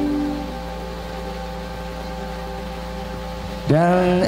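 Live stage band over a PA: a held chord that drops away about half a second in, leaving quieter sustained tones over a steady low hum.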